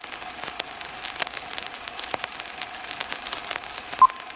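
Crackle and hiss of an old film soundtrack: steady surface noise thick with small pops and clicks, over a faint steady tone.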